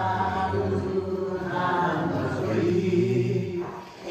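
A group of men and women singing a melody together, unaccompanied, with a brief break between phrases just before the end.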